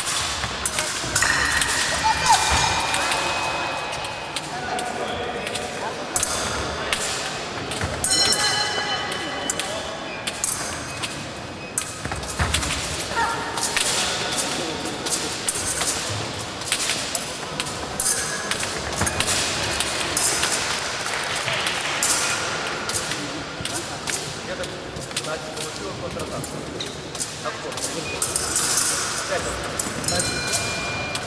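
Fencing bout on a piste in a large hall: quick footwork knocks on the wooden floor and clicking blade contacts, with voices echoing in the hall.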